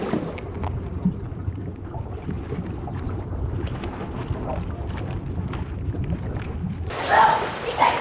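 Muffled underwater sound: a low rumble with faint scattered clicks, all the high end cut away. About seven seconds in it opens back up to above-water sound, with a woman's voice at the surface.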